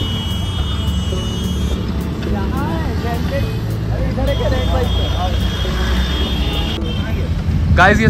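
City street traffic: a steady low rumble of passing road vehicles, with faint voices in the background.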